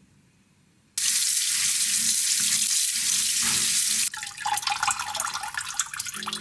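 Kitchen tap running hard into a stainless steel sink, starting suddenly about a second in. Just after the halfway point the steady rush turns into uneven splashing and trickling as water streams from a colander of broccoli into a steel bowl.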